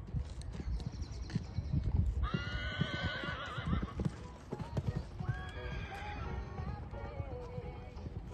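Muffled hoofbeats of a horse cantering on a sand arena. A horse whinnies loudly with a wavering pitch about two seconds in, then gives a second, longer whinny from about five seconds that falls in pitch.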